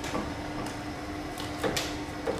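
A few faint clicks and rustles from hands moving wiring and parts in a car's engine bay, over a steady low hum. The clicks come in the second half.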